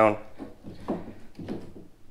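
Faint plastic knocks and scraping as a kayak rudder is worked up under the stern and seated in its mounting hole in the hull.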